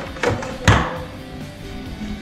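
A sharp plastic knock about two-thirds of a second in, with a lighter click just before it, as small plastic electronics modules are handled on a wooden table, over background music.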